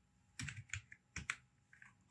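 Keystrokes on a computer keyboard: several short, faint key clicks in quick little runs as a word is typed.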